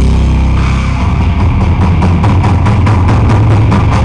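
Heavy metal band playing loudly: distorted electric guitars over bass and drums, in a fast, even rhythm.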